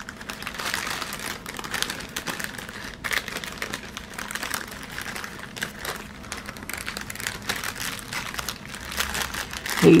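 Small clear plastic zip-lock bags crinkling and rustling as hands handle and open them, with many small crackles throughout.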